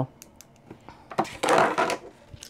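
Small metal dice clicking lightly, then a rattle of a little under a second as they are rolled onto a tabletop.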